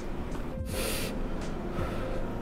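One short, sharp hissing intake of breath about half a second in, taken while eating a chili-hot tom yum noodle soup.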